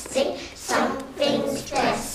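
A class of young children clapping their hands and chanting a rhyming poem together in a steady rhythm.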